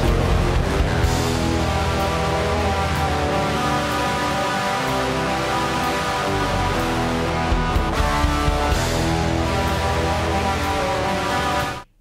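Progressive black/death metal song, guitar-led and dense with heavy low end, heavily compressed on the master so that it sounds trashy. It cuts off suddenly near the end.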